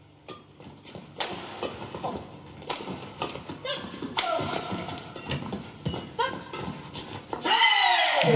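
Badminton rally: repeated sharp racket hits on the shuttlecock, short squeaks of court shoes, and players' shouts, with a loud shout near the end as the point finishes.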